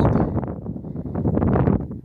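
Wind buffeting the microphone: a loud, rumbling noise with crackles.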